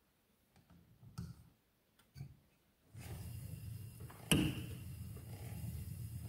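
Wooden spinning wheel plying yarn, quiet at first with a few faint clicks and taps. About halfway through a steady low whir sets in as the wheel runs, and a sharp knock comes a second later.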